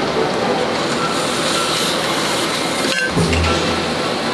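Steady machine noise of a garment factory workshop, with a short break and change in the sound about three seconds in.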